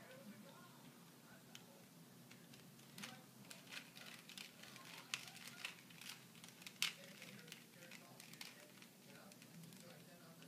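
A 3x3 Rubik's cube being turned by hand: a run of faint, quick plastic clicks and clacks as the layers are twisted, starting about three seconds in and thickest in the middle, with one sharper clack near seven seconds.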